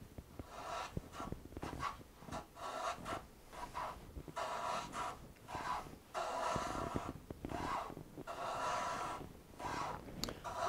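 Low-angle jack plane pushed on its side along a shooting board, trimming the edge of a wooden end wedge: about a dozen quick cutting strokes in a row, roughly one a second, with short pauses between them.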